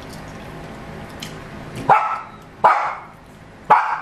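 A dog barking three times, short sharp barks roughly a second apart in the second half.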